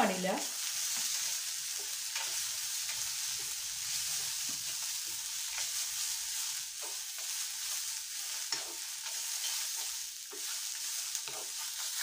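Grated coconut, dried red chillies and curry leaves frying in a nonstick pan while a spatula stirs them: a steady hiss of frying with irregular scrapes and pushes of the spatula through the mix.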